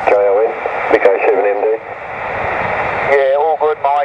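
Single-sideband voice on the 2 m band coming through a Yaesu transceiver's speaker, thin and cut off in the treble, with receiver hiss in a gap of about a second between phrases.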